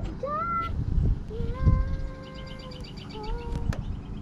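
A cat meowing three times: a short rising call near the start, one long steady call in the middle, and a short call a little after three seconds in.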